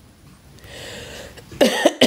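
A man coughing, a couple of quick harsh coughs near the end.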